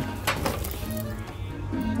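Quiet background music, with a few faint clicks near the start.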